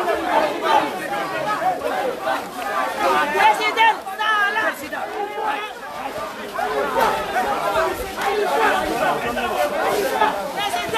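A dense crowd of people talking and shouting over one another close around the microphone, with a few voices rising higher near the middle.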